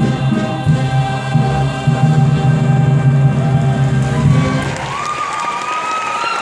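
A musical theatre cast chorus with accompaniment holds the final chord of a number. Near the end the chord gives way to audience cheering and applause, with one rising whoop.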